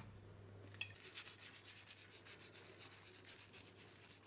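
Dried rosemary rubbed between fingertips and sprinkled over oiled dough: a faint, quick, dry rustling that starts about a second in.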